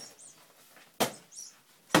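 A big hammer banging down on a bedside cabinet: two sharp knocks about a second apart, about a second in and near the end.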